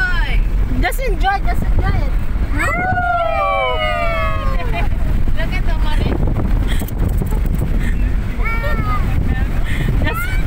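Vehicle driving over sand dunes, heard from inside the cabin: a steady low rumble of engine and tyres. Over it, passengers make short cries and, about three seconds in, a long high-pitched cry that falls in pitch.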